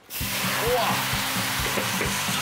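Green vegetables sizzling in hot oil in a wok as they are stir-fried, the sizzle starting suddenly a fraction of a second in and then holding steady.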